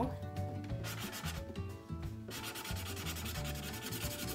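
Yellow felt-tip marker scribbling rapidly back and forth on paper as it colours in a drawn face.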